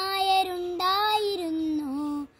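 A young boy singing a Malayalam verse unaccompanied in a chanting melody, holding long steady notes that dip slightly in pitch near the end.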